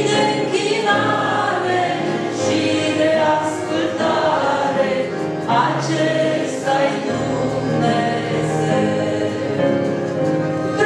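A woman singing a Romanian hymn into a microphone, with a group of voices singing along in long held notes.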